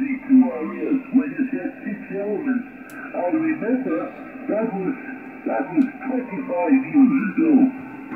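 Single-sideband voice from an amateur station on the 10 m band, heard through the transceiver's speaker: continuous speech, narrow and telephone-like with nothing above the speech range, over a light hiss.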